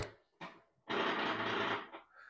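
A sharp click, then an Exxentric flywheel trainer whirring steadily for about a second as its strap is pulled and the flywheel spins.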